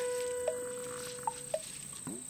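Insects singing in the roadside grass: a thin, high, unbroken note. Under it runs a steady lower tone that stops about one and a half seconds in.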